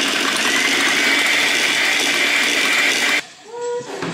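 Electric hand mixer running steadily as its beaters whisk batter in a bowl, switched off abruptly a little over three seconds in.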